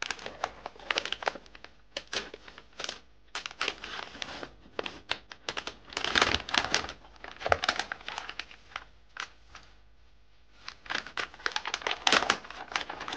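Plastic packaging bag crinkling and rustling as it is handled and opened, in irregular bursts, with a brief lull near the end before the crinkling resumes.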